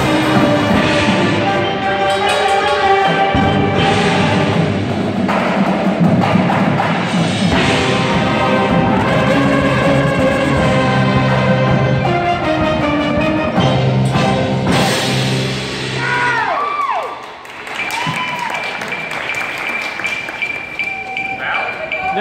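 Marching band of brass, woodwinds and front-ensemble mallet percussion (marimbas, vibraphones, timpani, cymbals) playing a loud passage of its show music in a large gym. The music stops about three-quarters of the way in, followed by a few voices calling out.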